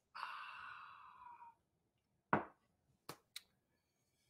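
A man's long breathy sigh, about a second and a half, near the start; later two short sharp clicks.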